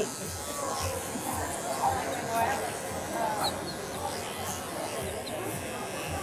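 Cordless pet clipper with a comb attachment running as it is drawn through a doodle's coat, heard under the steady chatter of a crowd in a large hall.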